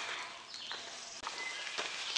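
Hiker's footsteps on a dirt forest trail, with a few light taps spaced through the steps.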